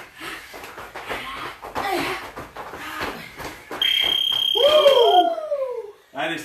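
Gym interval timer sounding one long, high, steady beep about four seconds in, marking the end of a work round. Before it come quick knocks of feet landing on rubber floor tiles. As the beep sounds, a person lets out a loud cry that rises and then falls in pitch.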